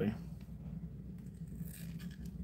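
Low steady hum, with a brief faint scrape near the end as fingers and metal forceps work a dead snake out of a cut leathery egg.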